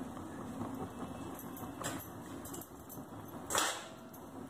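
Faint kitchen handling sounds around a large steel pot: a few soft taps as cashews and fried onion are dropped in, then one brief louder scrape or clatter near the end.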